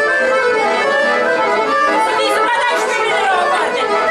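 Accordion playing lively traditional dance music, with people's voices chattering over it.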